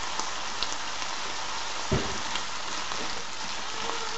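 Chikuwa and cabbage sizzling steadily in a frying pan as they are stir-fried in yakiniku sauce. There are a few light clicks of the stirring and one dull knock a little under two seconds in.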